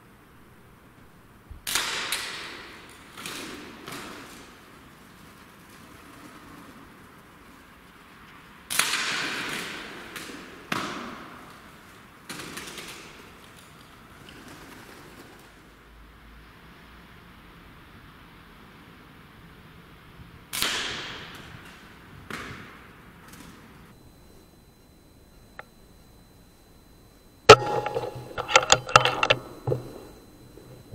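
Three shots from an Air Arms S510 .177 PCP air rifle, at about 2, 9 and 21 seconds, each ringing on for about a second in the big metal building and followed by a few quieter knocks. Near the end comes a dense burst of loud clicks and knocks, the loudest sound here.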